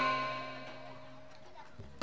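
Held notes of a Burmese hsaing ensemble ringing on and fading out over about a second as the piece ends, leaving a quiet hush with a soft knock near the end.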